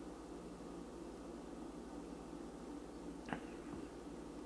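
Quiet room tone with a steady low hum, and a faint click a little past three seconds in as a pint glass is set down on its coaster.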